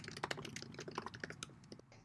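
Faint typing on a computer keyboard: a quick run of key clicks that thins out and stops near the end.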